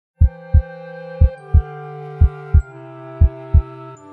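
Heartbeat sound effect: paired lub-dub thumps, about one pair a second, over a held musical chord that steps down in pitch a few times.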